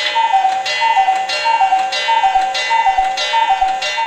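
Cuckoo clock calling "cuck-oo" over and over: a falling two-note whistle repeated about six times in quick, even succession.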